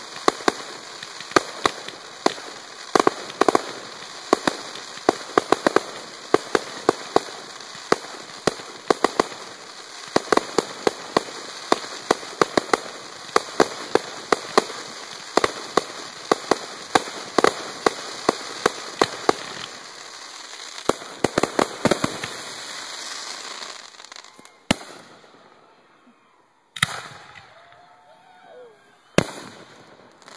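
Fireworks going off: a rapid, continuous crackle of many small sharp bangs over a steady hiss. It stops about twenty-four seconds in, and a few single bangs follow a couple of seconds apart.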